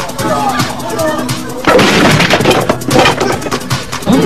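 Film gunfire sound effects under background music: after a quieter start, a dense run of rapid shots begins about halfway through and continues to the end.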